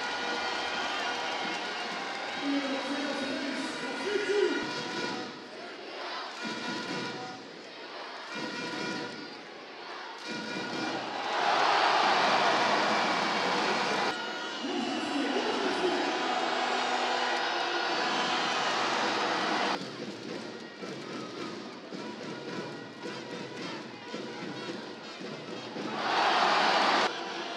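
Handball arena crowd cheering and chanting throughout, with a louder surge of cheering lasting a few seconds just before halfway.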